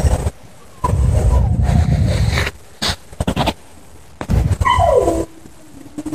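A dog whining behind a fence: a short falling whimper about a second in, and a longer whine sliding down in pitch near the end. Loud low rumbling noise comes in bursts over it.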